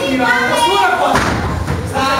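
A heavy thud a little over a second in, a fighter's body hitting the ring canvas or ropes in a grappling scramble, under the voices of people at ringside.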